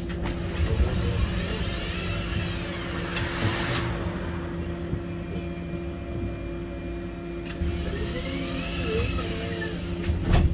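Steady low drone of a city bus standing at a stop, heard from inside the cabin. Two rising-then-falling whines, about two and nine seconds in, are typical of vehicles passing outside.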